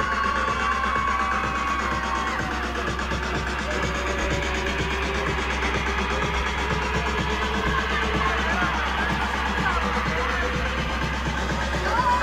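Music with a steady, deep bass and a fast, regular beat.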